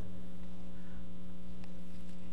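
Steady electrical mains hum, a low buzz on a few fixed pitches that holds level throughout.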